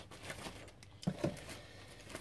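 Faint handling of plastic model-kit sprues: light rustling with a couple of soft knocks about a second in.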